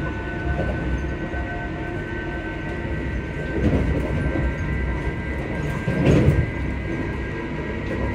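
Passenger train heard from inside the carriage: a steady low rumble with several high, steady whines over it. Two louder surges of rumble come about three and a half and six seconds in.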